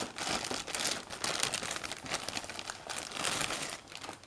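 Clear plastic bag crinkling in irregular bursts as a resin model building is pulled out of it by hand, dying down near the end.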